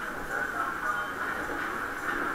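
Waltzer fairground ride in motion, heard from inside a spinning car: a steady rumbling clatter of the car and its platform running round the track.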